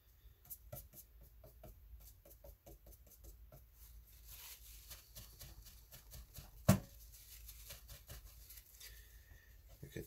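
Paintbrush dabbing and working wet paint on watercolour paper: quiet, irregular small taps and brushing. One sharp click a little under seven seconds in stands out as the loudest sound.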